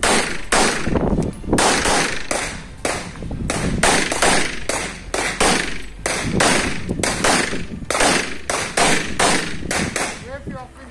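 Rapid pistol fire from a CZ Shadow 2 in 9mm, about twenty shots. They come in quick strings of two to four, with short breaks between the strings.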